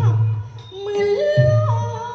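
A woman singing a Thai likay song, holding high notes and gliding between them, over instrumental accompaniment with a low drum stroke at the start and another about one and a half seconds in.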